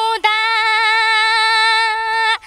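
A woman singing a long, steady high note in Nepali dohori folk style, unaccompanied, with a brief break in the voice just after the start.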